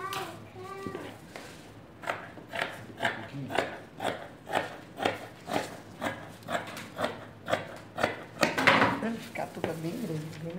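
Scissors snipping through knit fabric, a steady run of cuts about two per second, starting about two seconds in. A brief voice is heard at the very start.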